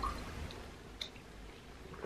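A person gulping down a ginger shot from a small bottle: faint wet swallowing with a couple of small clicks about half a second and a second in.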